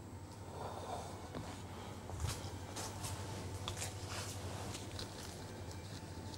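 Faint handling noises of a baking dish: a few light knocks and clicks over a steady low hum, the clearest knock about two seconds in.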